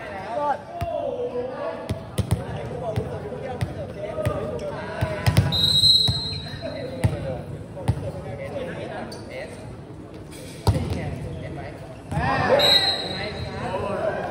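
A volleyball bouncing and knocking on a hard gym floor, with a referee's whistle blown twice, about five and a half seconds in and again near the end, among players' voices echoing in a large hall.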